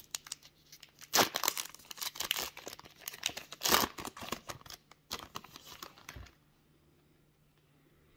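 Foil wrapper of a 2021 Panini Diamond Kings trading card pack being torn open and crinkled by hand: a run of rustling rips, the sharpest about a second in and near four seconds. The rustling stops about two-thirds of the way through.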